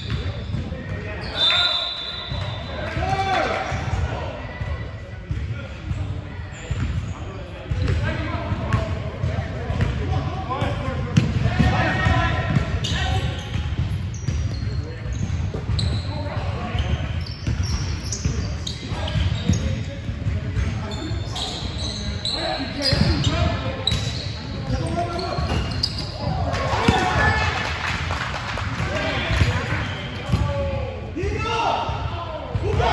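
A basketball bouncing on a hardwood gym floor during play, with sneakers squeaking now and then, all echoing in a large gym.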